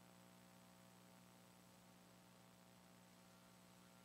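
Near silence with a faint steady hum.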